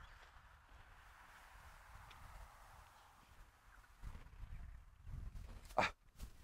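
Faint outdoor ambience with a soft steady hiss, then soft irregular low thuds and rumbles in the last two seconds.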